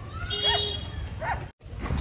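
A dog whining in a few short, high-pitched whimpers, cut off abruptly about one and a half seconds in.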